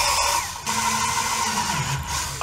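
Cordless drill running a step bit through the wall of a plastic enclosure, opening a pilot hole out to 5/8 inch. The motor eases briefly about half a second in, then runs on, its pitch dropping near the end as it slows.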